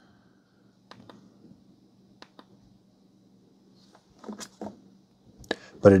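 A few faint, short clicks from the Anker 737 power bank's display button being pressed to cycle through its screens: a close pair about a second in and another pair about two seconds in. A faint steady low hum runs underneath.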